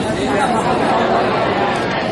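Speech only: voices talking, with no other distinct sound.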